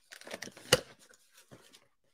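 Packing tape being torn off a cardboard shipping box and the flaps pulled open: a run of irregular tearing sounds with one sharp, loud snap a little under a second in, then fainter cardboard rustles.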